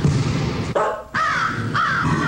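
Sound effects in a radio station ID: a dense, noisy rush, then two harsh, arching animal-like calls in the second half.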